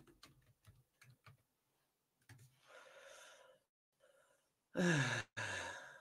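A man sighs about five seconds in, a voiced sound falling in pitch that trails into a breathy exhale. A few faint clicks come near the start.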